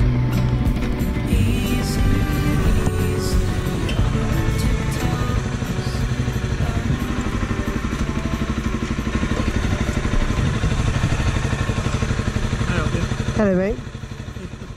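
Honda CRF250L's single-cylinder engine running as the bike rides along, then easing off about five seconds in and idling with a quick, even pulse.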